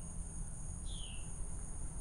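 A steady, high-pitched insect chorus trilling without a break, with a single short falling chirp about a second in.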